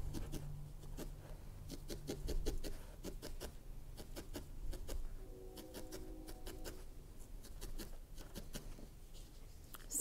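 A barbed felting needle stabbing repeatedly into wool, felting a tuft onto a needle-felted bear's head: faint, quick, irregular pokes, several a second.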